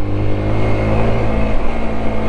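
Sinnis Terrain 125's single-cylinder four-stroke engine running at a steady pace while the bike rides along a gravel track.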